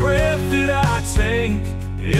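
Christian worship song: a voice singing a melody over instrumental backing with held chords and a beat.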